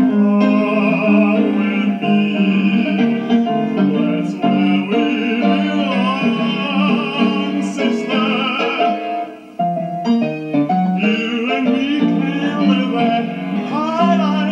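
A man singing in a classical, operatic style with a wide vibrato, accompanied by a grand piano. There is a short break in the sound about two-thirds of the way through.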